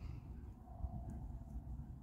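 Quiet pasture ambience: a faint, uneven low rumble with no distinct event.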